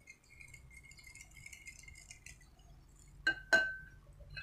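A metal wire whisk in a ceramic bowl of beaten egg: faint light clinking, then two sharp clinks near the end as the metal strikes the bowl, the second ringing briefly.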